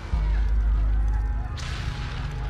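A sudden deep boom with a low rumble that carries on, and a sharp crack with a burst of hiss about one and a half seconds in: the sound of shelling.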